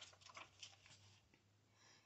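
Near silence with the faint rustle of a picture-book page being turned by hand: a few soft paper ticks in the first second.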